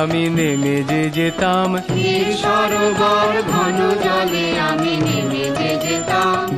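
A man singing a Bengali song over instrumental accompaniment, his voice gliding between long held notes.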